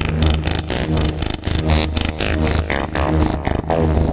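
Electronic body music (EBM / industrial dark electro) from a DJ mix: a dense, driving beat with a pulsing bass line and rapid sharp hits.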